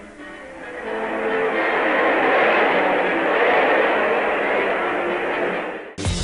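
Music: a dense, noisy swell with faint guitar-like tones. It builds over the first two seconds, holds, and cuts off suddenly at the end.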